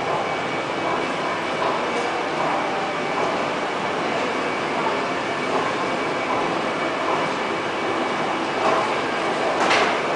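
Steady hum and hiss of a large indoor space with a faint steady tone while a KONE Monospace 700 machine-room-less traction glass elevator comes to the landing. A brief louder noise near the end as the car's doors open.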